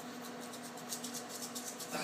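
Faint rattling of a small Metron breath-ketone test tube being shaken hard, its broken glass ampoule and reagents tumbling inside to mix the liquid with the powder.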